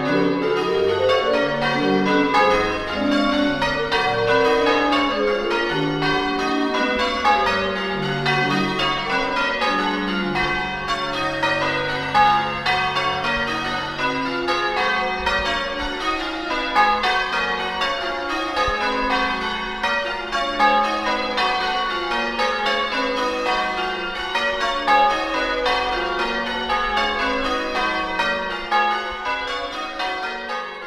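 Church bells rung in changes: a peal of many bells struck one after another in quick, overlapping succession.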